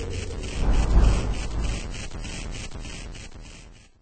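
An end-of-video sound effect: a low, noisy swell that peaks about a second in, then fades away to nothing, with a faint even pulsing above it.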